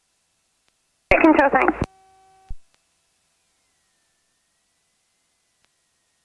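Near silence on the cockpit intercom audio, broken about a second in by a brief, clipped burst of radio speech under a second long. A short steady buzzing tone follows, then a click as the transmission ends.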